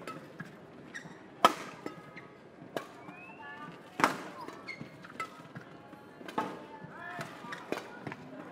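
Badminton rackets striking the shuttlecock back and forth in a fast rally: sharp cracks about every second, the loudest two about a second and a half and four seconds in, with background crowd noise.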